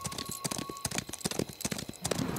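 Hoofbeats of two galloping horses: a rapid, irregular clatter of hooves.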